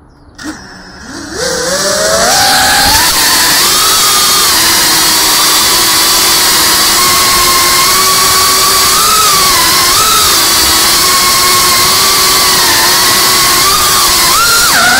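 FPV drone's electric motors and propellers whining, spinning up with a rising pitch in the first few seconds, then holding a loud, steady whine that wavers slightly with the throttle.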